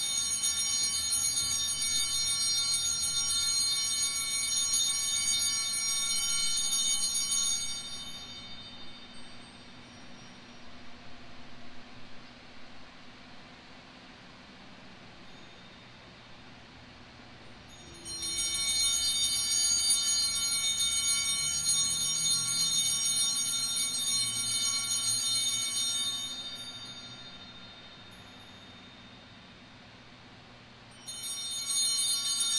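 Altar bells shaken in two long bursts of bright, shimmering ringing, each about eight seconds, the second starting about eighteen seconds in, with quiet between: the bells rung as the priest blesses the people with the monstrance at Benediction.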